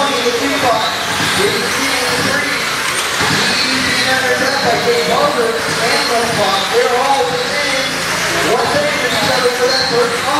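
Several 1/10-scale electric RC sprint cars with 13.5-turn brushless motors racing together, their motor whines rising and falling over and over as they accelerate and ease off, over a haze of tyre and dirt noise.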